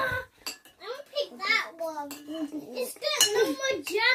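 A young child's high-pitched voice talking in short phrases, with a fork and spoon clinking and scraping on a ceramic plate.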